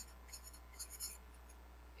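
Felt-tip permanent marker writing on paper: a few short, faint scratchy strokes in the first second or so.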